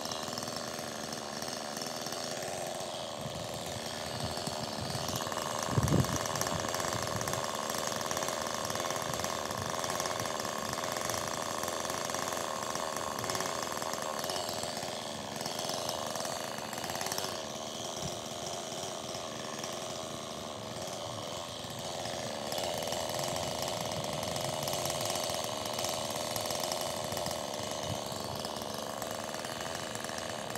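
Husqvarna 390 XP two-stroke chainsaw running at a distance while bucking logs, its pitch shifting several times as it works. A sharp thump about six seconds in.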